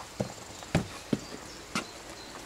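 A series of sharp knocks on a hard surface, four in two seconds at an uneven, walking-like pace.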